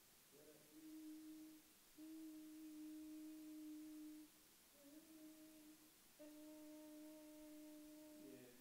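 A patient's voice holding a steady vowel at a single mid pitch during laryngoscopy, in four sustained notes of one to two seconds each with short breaks between, the third sliding up into its note. The phonation comes from vocal folds that close with a posterior glottic gap (hiatus posterior).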